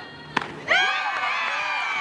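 A single sharp crack about a third of a second in as a softball bat fouls off a pitch, followed by voices calling out loudly and at length.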